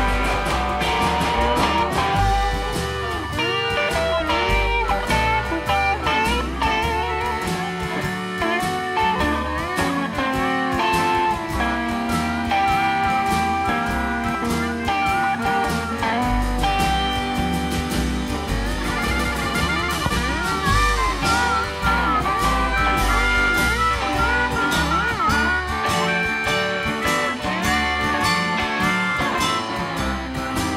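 Live blues band playing an instrumental break: an electric guitar leads with bent, gliding notes over a steady bass line.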